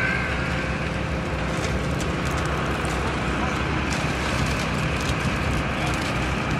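Heavy diesel engine of a concrete pump truck running steadily at a concrete pour, a constant low rumble.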